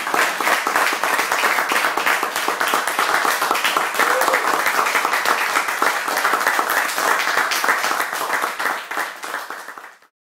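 Audience applauding: many hands clapping in a dense, even patter that thins out near the end.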